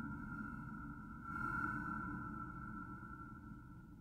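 A sustained high ringing tone from the performance's multimedia soundtrack. It swells again about a second in and then slowly fades away.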